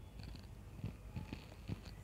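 A pause in speech: a faint low hum of room and microphone noise, with a few soft small clicks scattered through it.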